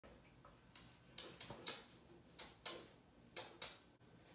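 Fingers snapping: a run of sharp snaps, mostly in pairs about a quarter second apart, repeating roughly once a second.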